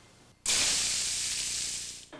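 Burgers sizzling on a griddle, starting suddenly about half a second in and slowly fading.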